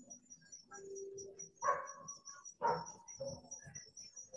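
Insects, likely crickets, chirping in a steady fast high-pitched rhythm, picked up by an open microphone on a video call. There are two short, louder sounds about two and three seconds in.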